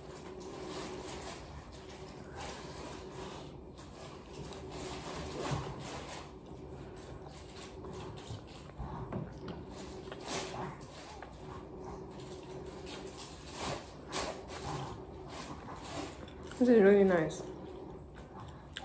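Soft sounds of a person eating by hand, chewing and small mouth clicks, over a faint steady hum, with a brief sound of a voice near the end.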